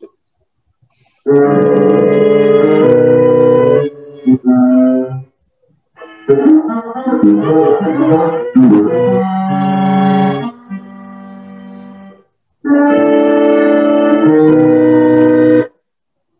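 Tenor saxophone and electronic flute playing long held notes together, from an old home recording played back over a video call. The music comes in three loud phrases, each cutting off abruptly into silence.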